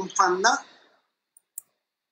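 A man speaking for about half a second, then near silence broken by two faint clicks about a second and a half in.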